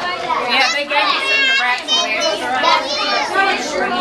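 Young children's high-pitched voices talking and calling out, overlapping one another without a pause.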